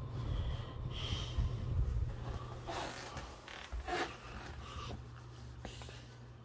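Soft, scattered rustling and handling noises of neckties being hung on a wire tie hanger, over a low steady hum.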